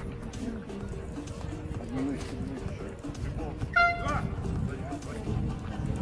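People talking near the microphone, with a faint steady tone underneath. About four seconds in comes a short, loud, high-pitched call or shout, the loudest sound here.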